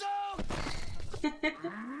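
Anime soundtrack: a man's shouted voice, then a low rumbling crash of a fist striking the floor, with more voices over it.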